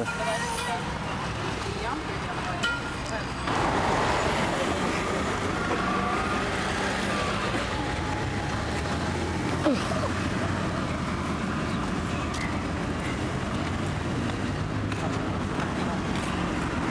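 Road traffic: cars and other vehicles driving past, a steady mix of engine and tyre noise that grows louder about three and a half seconds in.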